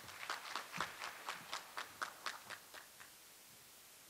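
Sparse applause from a small audience, a few people clapping at about four claps a second, dying away about three seconds in.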